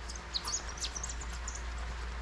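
Small birds chirping in the background: a quick run of short, high-pitched chirps in the first second, over a steady low hum.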